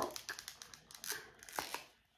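Faint crinkling and small clicks of a clear plastic sample container being handled, a run of light ticks and rustles that dies away near the end.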